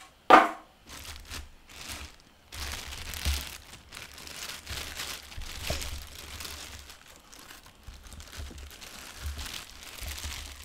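Clear plastic wrapping film being handled and pulled off a turntable, crinkling and rustling unevenly. There is one loud sharp sound about a third of a second in.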